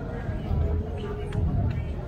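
Indistinct voices of people talking nearby, over music with a held note.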